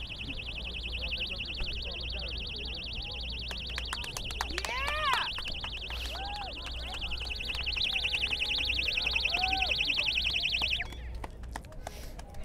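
Electronic alarm bell ringing with a rapid, high-pitched pulsing, then cutting off suddenly near the end. It is a prop alarm standing for the alarm set off at the missile silo.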